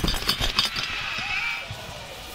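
Arena crowd noise, with a heavy thud at the start and a quick run of knocks over the first half-second, then a steadier, quieter hum of the crowd.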